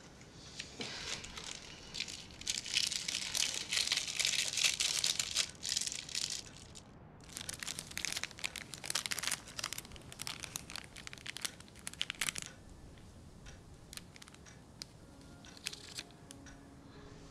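Foil wrapping crinkling and rustling as hands unfold a small gift packet. It comes in bursts for about ten seconds, with a short pause midway, then dies away.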